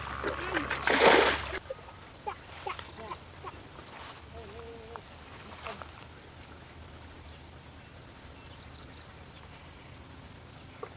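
Two loud rustling bursts of handling noise in the first second and a half as the camera is swung through streamside weeds. Then a quiet outdoor background with a steady faint high hiss.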